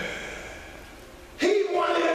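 A man's voice through a microphone and hall sound system: a phrase trails off into a short pause, then the voice starts again suddenly about one and a half seconds in, on a drawn-out tone that rises at first.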